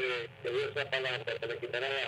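A caller's voice over a telephone line: thin, cut off above the upper mids, and indistinct, with pauses about half a second in and near the end.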